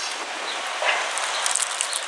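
Steady outdoor background rush, an even hiss-like noise with no distinct events, with a brief soft rustle about a second in.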